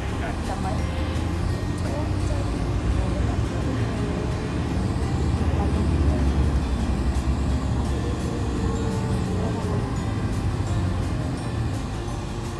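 Road and engine rumble heard from inside a moving vehicle, swelling a little in the middle.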